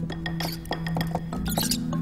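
Pet mice squeaking, with small clicks, over background music that holds a steady low note; a cluster of high squeaks comes about three-quarters of the way through.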